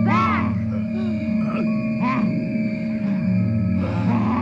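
Eerie horror-film music: steady droning tones held throughout, with gliding, voice-like swoops rising and falling over them, strongest at the start and again about two seconds in.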